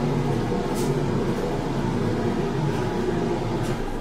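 Tarot cards being shuffled by hand: a steady, dense rustle of many small clicks that fades out just after the end.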